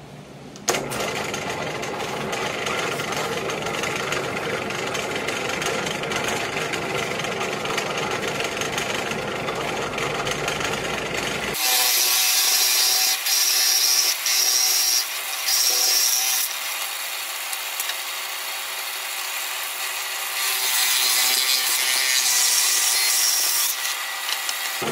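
Drill press running as a large bit bores can-sized holes through a wooden board. About halfway through, the sound changes abruptly, turning higher and hissier, with several brief breaks as the bit cuts in and lifts out.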